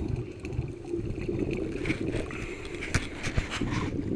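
Scuba regulator exhaust bubbles heard underwater through a GoPro's waterproof housing: a steady muffled low rumble, with a spell of bubbly crackling and popping from about two seconds in as the diver breathes out.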